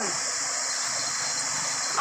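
Steady rush of flowing river water, an even hiss with no breaks.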